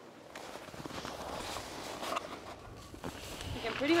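Footsteps crunching in snow, with a few irregular knocks, and a voice beginning to speak at the very end.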